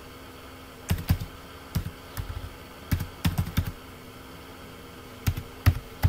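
Keystrokes on a computer keyboard: short clicks in small irregular bursts with pauses between, as a word is typed.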